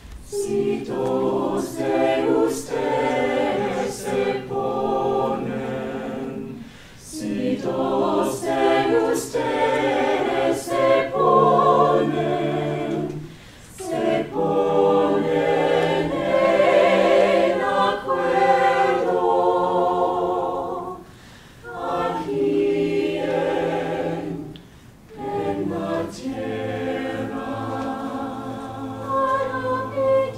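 Small mixed-voice a cappella choir singing in harmony, men's and women's voices together with no instruments. The singing comes in phrases with brief pauses between them, and crisp 's' sounds from the words stand out in the first few seconds.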